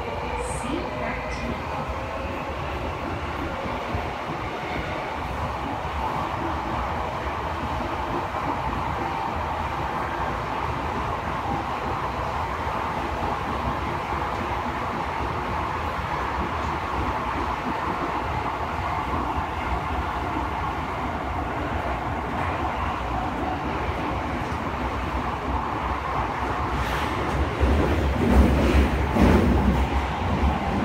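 Tokyo Metro Chiyoda Line subway train running, heard from inside the car: a steady running noise, growing into a louder low rumble with clatter near the end.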